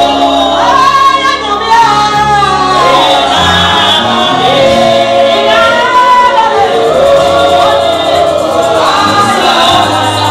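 A congregation singing a gospel song together, many voices at once, over instrumental accompaniment whose low notes are held and change every second or so.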